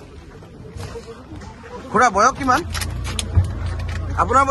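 A vehicle's engine comes in about two-thirds of the way through and runs with a steady low rumble, heard from inside the cabin. A short burst of a man's voice comes just before it.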